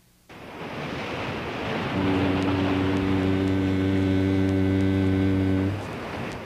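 Surf-like rushing noise rises, and about two seconds in a deep horn sounds one long steady note, like a ship's horn, stopping shortly before the end as the surf noise fades.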